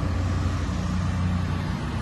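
Diesel engine of a 2019 Doosan DX350LC-5 hydraulic excavator idling, a steady, even low hum.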